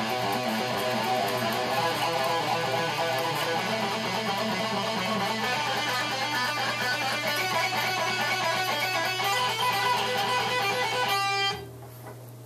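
Electric guitar playing a fast, repeated single-note fingering drill of picked notes and hammer-ons, each group ending on a pinky hammer-on. The playing stops about eleven seconds in, leaving a steady low hum.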